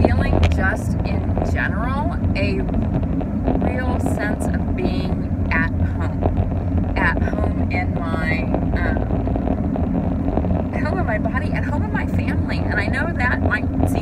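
Steady road and engine rumble inside a moving car's cabin, with a woman's voice over it most of the time.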